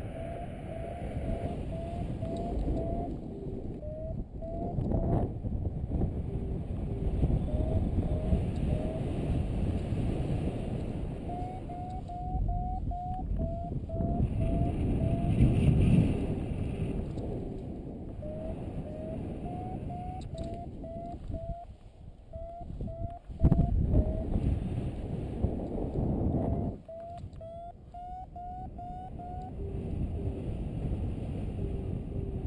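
Wind rushing over the microphone in paragliding flight, with a variometer's short rising beeps coming in runs of a few a second and pausing in between: the climb tone that signals the glider is rising in lift. A couple of sharp knocks come through, the loudest about two-thirds of the way in.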